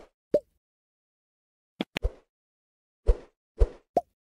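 Short pop and click sound effects from an animated subscribe-button outro, about six quick ones with silence between them, two of them close together about two seconds in.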